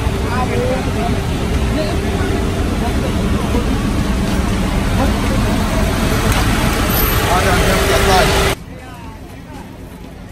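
Crowd babble of many people talking over steady low vehicle noise and a faint held hum. It cuts off suddenly near the end, leaving a much quieter background.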